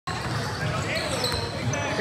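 Basketball game sounds in a large gym: sneakers squeaking on the hardwood court and faint voices, with the room's echo.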